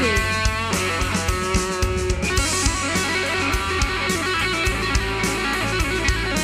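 Live band playing an instrumental passage: electric guitar notes, some of them bent, over a steady drum kit beat.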